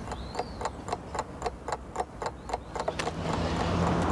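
Steady, regular ticking at about four ticks a second, with a low hum building underneath near the end.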